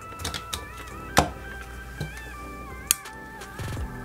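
Background music with a light melody, over which a handful of sharp clicks sound, the loudest a little after a second in, as side cutters snip and pry at the plastic parts of a headset earcup.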